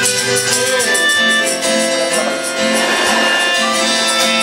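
Live acoustic duo: an acoustic guitar strummed in a steady rhythm under a harmonica playing sustained, slightly bending melody notes.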